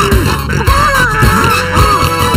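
Upbeat cartoon theme music with a steady beat and a melody of gliding, bending notes.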